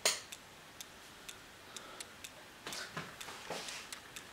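A sharp click as the room light is switched off, then faint ticking about twice a second in an otherwise quiet room.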